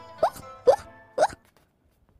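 Three short, quick rising 'bloop' pops about half a second apart, over background music that fades out about a second and a half in.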